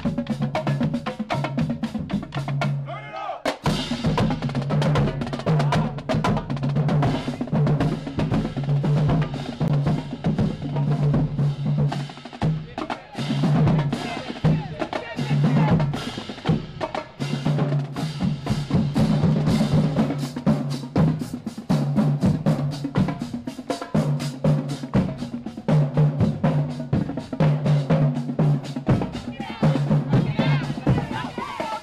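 University drumline playing a fast cadence: rapid snare drum strokes over pitched bass drums, with cymbal crashes. The sound breaks off briefly about three seconds in and then carries on.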